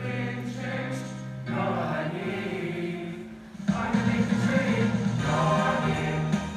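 Choir singing together in held notes, getting louder about four seconds in.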